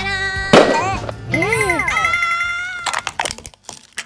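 Squeaky cartoon voice effects over music, with a loud sudden burst about half a second in. Near the end comes a run of sharp cracks as a plastic toy car breaks under a car tyre.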